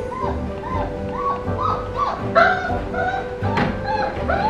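Background music with a steady beat, over puppies whining in short rising-and-falling cries, about two a second.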